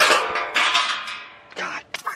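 Sudden crunch and clatter of a removed car dashboard being stepped on, a noisy metallic rattle that fades away over about a second and a half.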